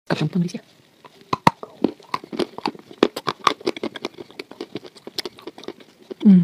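A brief vocal sound, then a dense run of small sharp crackles and clicks as a crisp waffle is handled and dipped into a glass bowl of milk.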